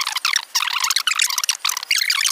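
Dense, rapid, high-pitched squeaky chatter with no low tones, running without a break.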